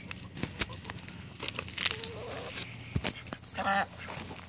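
A young female duck gives one loud, short quack near the end. The loud quack marks her as a duck (female), since drakes make only a whispery sound. A few faint clicks come before it.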